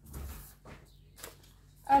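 Faint handling noises of objects being moved on a wooden tabletop: a soft muffled bump at the start, then a few light ticks.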